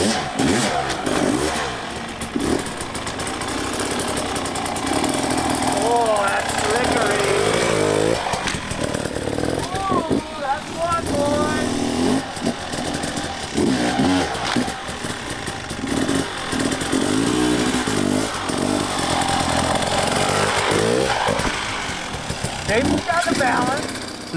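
Enduro dirt bike engine running and revving in throttle blips, its pitch rising and falling, as the bike is ridden slowly up onto and along a log.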